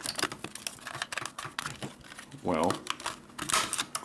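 Plastic calculator case creaking and clicking as its snap-fit clips are pried apart by hand: a run of small, irregular clicks and crackles.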